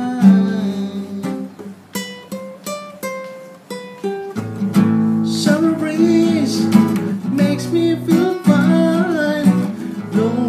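Classical acoustic guitar playing: single plucked notes, each ringing out, for the first few seconds, then fuller strummed chords from about halfway through.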